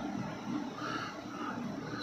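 Quiet, steady background hiss with no distinct event: room tone.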